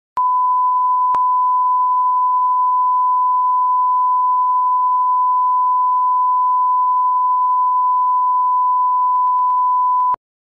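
A steady 1 kHz line-up test tone, the reference tone that goes with colour bars at the head of a broadcast tape. It holds one unchanging pitch, with a click as it starts and another about a second in.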